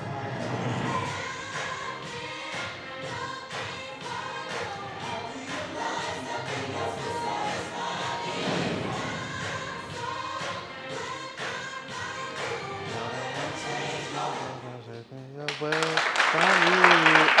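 Recorded live-performance music played back over a room loudspeaker: singing with backing voices over a steady beat. Near the end the music stops and applause starts.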